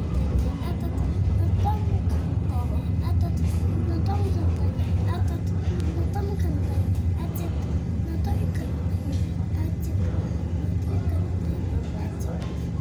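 Steady low rumble and hum of a train in motion, heard from inside a passenger coach of an EKr1 intercity electric train.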